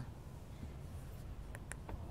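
Quiet background rumble with three faint, short clicks close together near the end.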